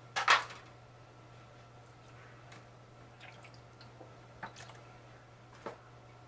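Wet handling noises of raw turkey wings being rinsed in a kitchen sink: a sudden, loud wet splash a little after the start, then a few softer wet knocks and drips near the end.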